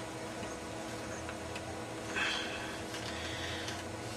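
DVD player's disc drive mechanism working as it tries to load a disc: faint motor whirring and small clicks, with a brief louder mechanical whirr about two seconds in.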